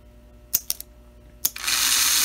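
Gilbert HO locomotive's mechanical reverse unit clicking a few times as its relay is pressed, then the locomotive's motor starts running with a loud, hissy whir about a second and a half in.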